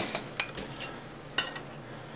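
A few light clicks and taps from a plastic tape dispenser and a drinking straw being handled and set down on a wooden desk, spread over the first second and a half.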